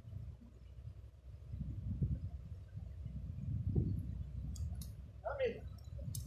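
Low rumble of wind buffeting the microphone, with a short falling voice-like call near the end and a few faint clicks just before it.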